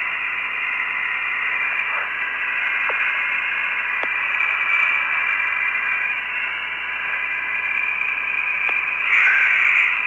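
Steady hiss of the open air-to-ground radio link with no voice on it, narrow like a voice channel, with a thin steady tone and a few faint clicks. The hiss briefly swells louder near the end.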